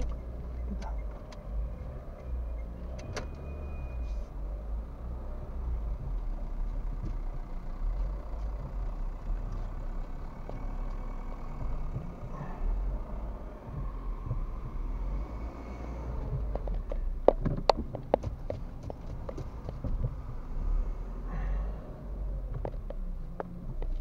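Low, steady rumble of a car's engine and tyres heard from inside the cabin as the car drives slowly. A few sharp clicks or knocks come close together about three-quarters of the way through.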